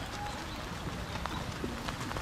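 A horse's hoofbeats on wet sand arena footing, heard as irregular soft clicks over a steady noise of rain.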